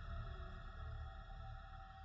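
Dark ambient background music: a low drone with a few held notes, fading out.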